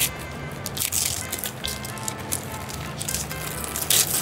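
Wrapping paper being torn and crumpled off a gift box in a few crackling rips, the loudest about a second in and another near the end, over background music.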